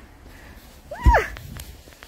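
A boot sinking into deep fresh snow with one low thump about a second in, heard together with a short high-pitched squeal that rises and falls.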